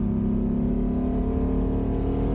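The Ferrari 250 GT Drogo's V12 engine, heard from inside the cabin, pulling under steady load with the revs climbing slowly.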